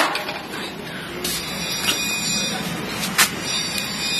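A modified-nylon tactical belt clip (K-sheath clip) being flexed open and snapped shut by hand in a repeated-flex durability test, giving a few sharp plastic snaps spaced about a second or more apart, over a steady background noise.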